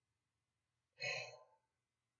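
A woman's single short, emotional breath about a second in, as she chokes up mid-sentence; otherwise near silence.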